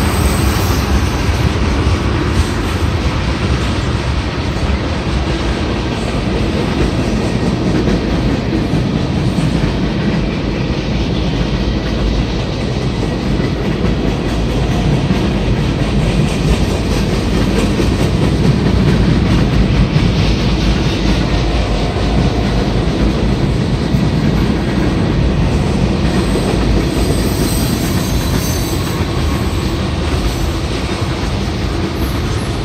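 A freight train of tank cars, boxcars and centerbeam flatcars rolling past at close range: a steady, loud rumble of steel wheels running over the rails.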